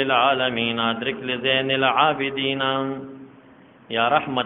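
A man chanting Arabic devotional verse in a slow, melodic voice with long held notes, breaking off about three seconds in.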